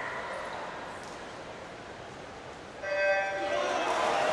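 Electronic start signal of a swim meet's starting system, a steady beep of several stacked tones that cuts in suddenly about three quarters of the way in, after a hushed pause while the swimmers hold still on the blocks. The beep starts the race.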